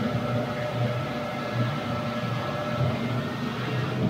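Suzuki 175 outboard motor running steadily with the boat under way, a level engine drone with the rush of the wake and wind over it.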